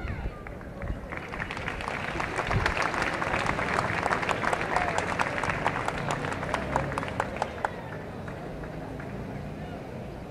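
Audience applause with some crowd voices. It builds about a second in, is strongest in the middle and dies away near the end.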